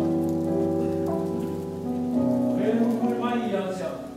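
A slow hymn: sustained keyboard or organ chords that change about once a second, with voices singing over them, loudest near the end.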